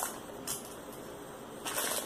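A clear plastic bag of rubber loom bands crinkling as it is picked up, starting near the end; before that it is mostly quiet, with a brief rustle about half a second in.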